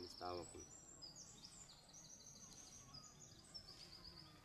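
Faint birdsong: a bird singing a series of high, rapid trills one after another, starting about a second in.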